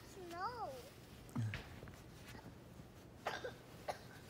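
A young child's high, wavering wordless vocal sounds, then a short cough-like sound about a second and a half in, and two brief noisy sounds near the end.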